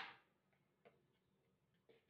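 A single sharp knock of hard kitchenware with a brief ring, followed by two faint ticks about a second apart.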